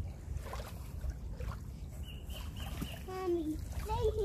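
Wind rumbling steadily on the microphone by open water, with a short call falling in pitch about three seconds in.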